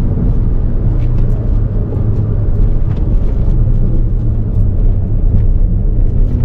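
A car being driven at a steady pace: a continuous low engine and road rumble, with no sharp revving.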